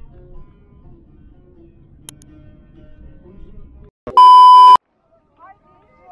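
Faint background music, then a little after four seconds in a single loud, steady, high-pitched electronic beep about two-thirds of a second long that cuts off suddenly.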